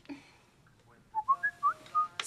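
A mobile phone's message alert: a quick run of four or so short, high chirping tones about a second in.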